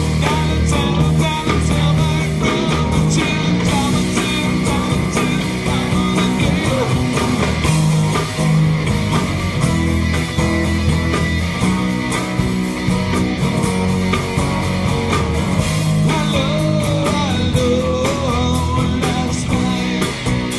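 Live rock band playing: drums keeping a steady beat under bass and a guitar carrying a wandering melodic line.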